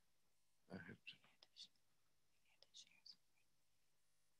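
Faint whispered muttering under the breath, in two short bursts with hissy 's'-like sounds, over near silence.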